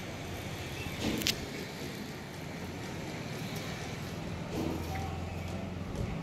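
Outdoor urban background: a steady low traffic hum, swelling briefly near the end, with one sharp click about a second in.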